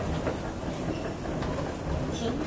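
Steady low rumble of a metro train running in an underground station, carried through the concourse.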